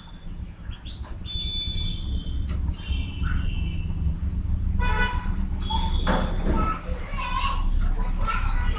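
Background noise: a steady low rumble, with high held tones from about one to four seconds in and again briefly near six seconds, and short voice-like sounds in the second half.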